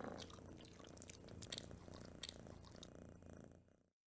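A cat purring faintly, with a few small clicks over it; the sound cuts off to silence near the end.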